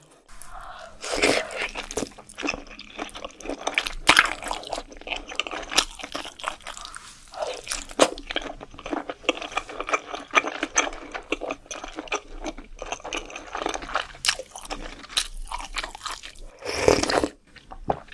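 Close-miked ASMR eating of fried Korean fish cake: steady chewing with many short crunches, and louder bites now and then.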